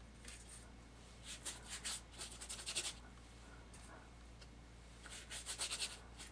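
A faint one-inch watercolor brush scrubbing paint onto wet paper in two bursts of quick, short strokes: one about a second in and one near the end.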